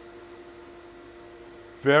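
Steady mechanical hum holding a few constant tones, with a man's voice starting near the end.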